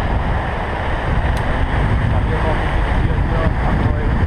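Wind buffeting the microphone of a camera riding on a moving bicycle: a loud, steady rushing noise, heaviest in the low end.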